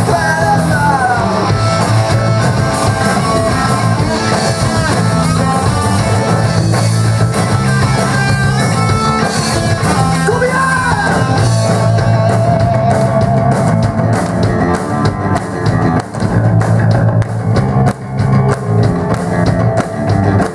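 A rock band playing live: electric guitar, bass guitar and drum kit, with singing. The guitar has bending notes near the start, and the playing breaks into short stops near the end.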